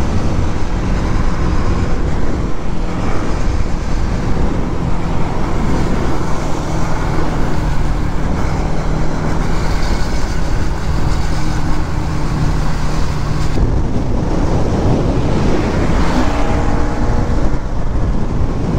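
Motorcycle at highway speed: wind rushing over the microphone over the steady drone of a Bajaj Pulsar NS200's single-cylinder engine, its note holding steady through the middle and shifting near the end.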